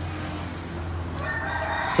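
A rooster crowing: the call begins a little past halfway and builds toward the end, over a low steady hum.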